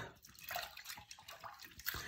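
Faint water sounds at a sink: a soft trickle with a few small drips and splashes.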